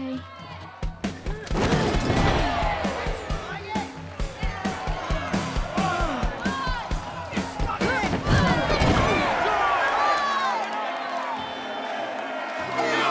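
Film soundtrack of a small-hall wrestling match: music with an audience shouting and cheering, and a fast run of sharp thumps from about a second in until about nine seconds in.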